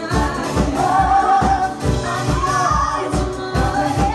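Live pop band performance: a woman's lead vocal with a group of backing singers, over grand piano, bass and drums keeping a steady beat.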